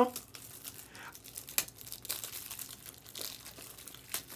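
Foil trading-card pack wrapper crinkling and rustling as it is torn open, an uneven run of crackles with one sharper snap about a second and a half in.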